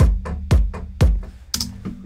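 Electronic trance kick drum sample from a Drum Machine Designer kit, hitting four times evenly, one every half second, in a steady four-on-the-floor beat at 120 BPM, each hit a deep thud with a short decay.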